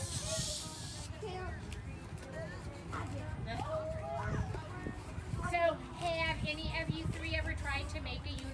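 Hand balloon pump hissing for about a second at the start as a long twisting balloon is filled, then wavering squeaks of the rubber as the balloon is twisted into shape.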